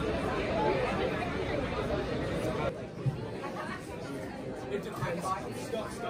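Crowd chatter: many people talking at once. About two and a half seconds in it changes abruptly to quieter voices, with one brief knock just after.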